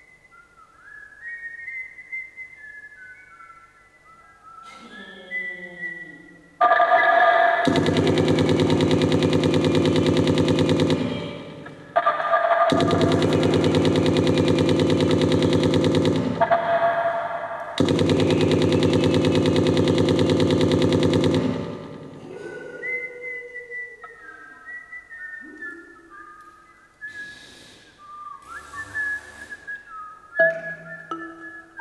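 Stage performance soundtrack: a high, whistle-like melody moving in steps is cut three times by loud, rapidly pulsing buzzing bursts of about four seconds each, a few seconds in, near the middle and around two-thirds through. The melody returns after the third burst.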